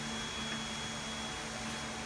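Steady room background noise: an even hiss with a constant low hum and a faint high whine, the sound of a running household appliance such as a fan.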